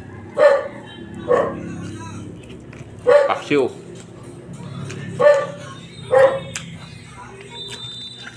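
A dog barking: about six short single barks spaced a second or so apart, one with a falling yelp, over a steady low hum.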